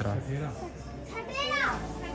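Background voices of visitors, children among them, with one high child's voice rising and falling about a second and a half in; steady background music comes in near the end.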